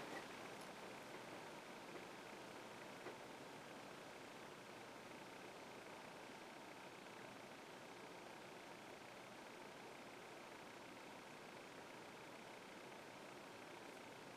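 Near silence: faint room tone, with one soft click about three seconds in.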